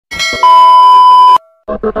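Intro sound effects for a subscribe-button animation: a short chime, then a steady test-tone beep of the kind played with TV colour bars, cut off abruptly after about a second. A pulsing music track starts near the end.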